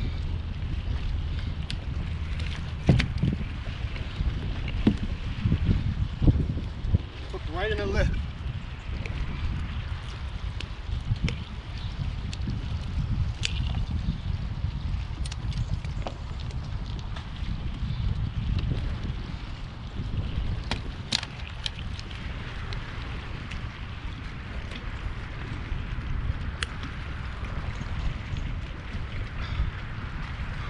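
Wind rumbling on the microphone, with scattered knocks and thumps of a large fish and a fish grip being handled on a plastic floating dock, the loudest knocks a few seconds in.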